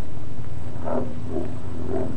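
Steady low drone of a propeller plane's piston engine in flight.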